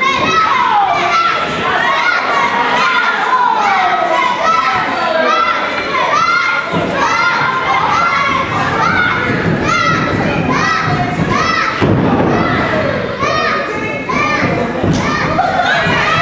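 Children in the crowd yelling and calling out over and over in an echoing gym hall. Heavy thuds of wrestlers hitting the ring mat come through about seven and twelve seconds in.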